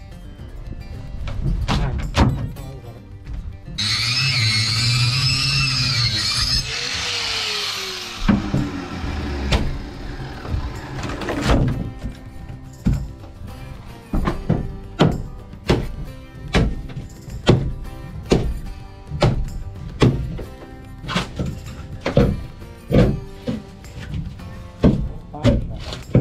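Repeated sharp knocks, one or two a second, as a hand tool chips the last wooden stringer remains out of a fibreglass boat hull, over background music. About four seconds in, a grinder runs for some four seconds with a wavering whine.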